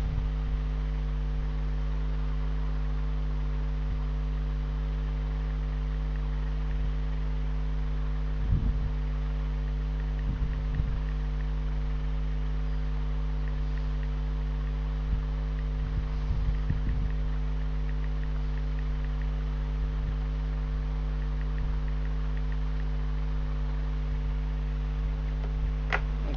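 Steady electrical mains hum on the recording, made of several low tones held throughout over faint hiss. A few faint, brief low sounds come through about eight and ten seconds in and again around sixteen to seventeen seconds.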